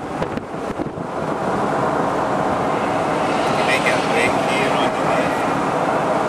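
Wind rushing over an open-top convertible and buffeting the microphone, with tyre and road noise, as the car drives along at speed. The rush grows a little louder about a second in and then holds steady.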